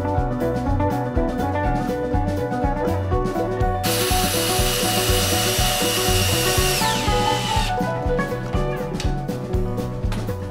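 Cordless drill driving a deck screw into a pine stud for about four seconds, its motor whine dropping in pitch as it slows and stops. Background music with a steady beat plays throughout.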